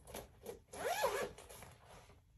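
A pencil case being unzipped: a short tug near the start, then a longer, louder pull of the zipper about a second in.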